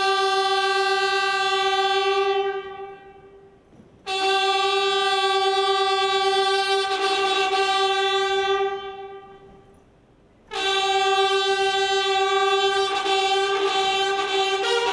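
A brass instrument sounding one long held note three times at the same pitch, each note fading away over a couple of seconds; near the end other notes join in.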